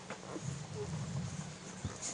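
Week-old Airedale terrier puppies suckling at their mother's teats: small smacking clicks, with a louder low murmur for about a second in the middle.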